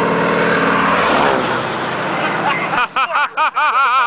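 A de Havilland DHC-2 Beaver floatplane's nine-cylinder radial engine and propeller, loud as the plane makes a low pass overhead. The pitch drops about a second in as it goes by and climbs away.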